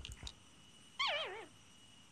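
A short cartoon whimper about a second in: one high, wobbling cry that slides down in pitch for about half a second.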